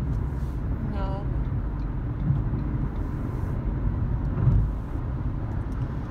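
Steady low rumble of road and engine noise inside a moving car's cabin, with one short vocal sound about a second in.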